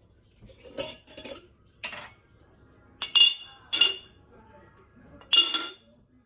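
Glass jars clinking as they are handled and set down among other jars: several knocks, the loudest about three seconds in and near the end, each ringing briefly.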